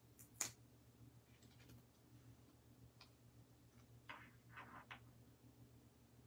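Near silence from hands applying foam dimensionals to paper card pieces. There is one sharp click about half a second in, a faint tick about three seconds in, and a few soft paper rustles about four to five seconds in.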